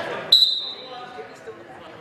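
Volleyball referee's whistle: one short, high, steady blast about a third of a second in, fading over about half a second. It is the first referee's signal to serve.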